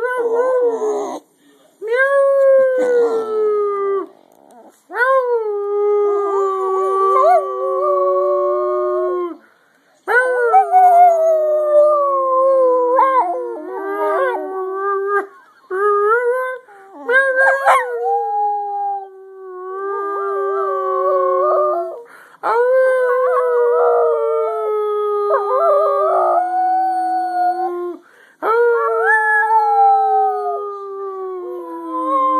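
Small wire-haired terrier-type dog howling: a string of long, held howls, each lasting a few seconds and sliding gently down in pitch, with short pauses for breath between them.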